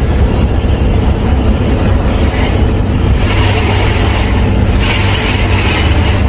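Volkswagen truck's diesel engine droning steadily, heard from inside the cab at highway speed. Two rushes of hissing noise rise over it, one about three seconds in and one near the end.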